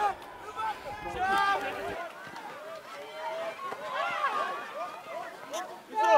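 Speech: a man's voice giving rugby match commentary, low in the mix over open-air match sound.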